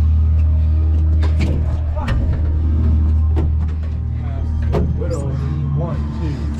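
Drum corps show music holding a deep, sustained low chord, with scattered sharp knocks and clatter of horns and props being handled; a voice comes in near the end.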